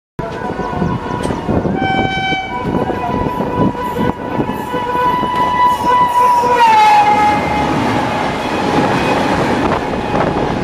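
Indian Railways WAP-5 electric locomotive sounding a long, steady horn as it approaches on the adjacent track, with a short higher chord about two seconds in. Near seven seconds the horn's pitch drops as the locomotive passes, then the rumble and wind rush of its coaches going by close alongside the moving train.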